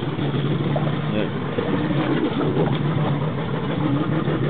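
Boat motor idling with a steady low hum.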